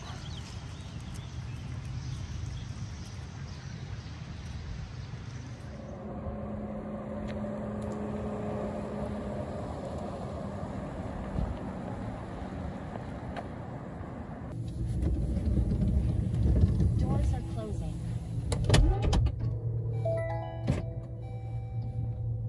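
Steady outdoor noise gives way, about two-thirds through, to the cabin of a Waymo robotaxi minivan: a louder low rumble with knocks and clicks. Near the end a synthesized voice begins to speak.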